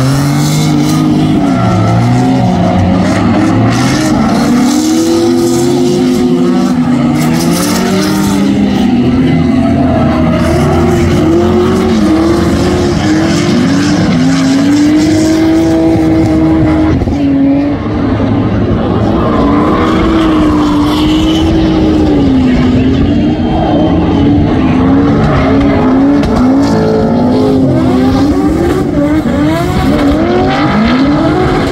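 Drift cars' engines revving hard and falling back over and over as the cars slide sideways, with tyre squeal under them. The engine note swoops up and down the whole time.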